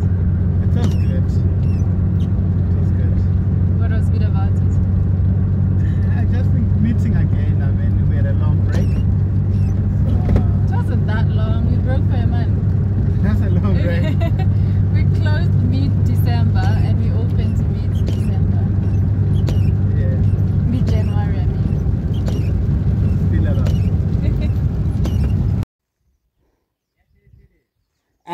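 Steady low drone of a car's engine and road noise heard inside the cabin of the moving car, with people talking over it. The sound cuts off abruptly shortly before the end.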